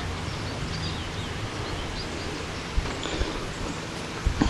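Steady outdoor background noise with faint bird chirps, and a couple of soft handling bumps near the end.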